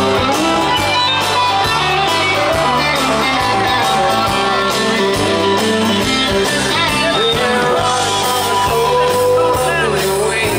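Live country band music led by a strummed acoustic guitar, played loud through the stage sound system.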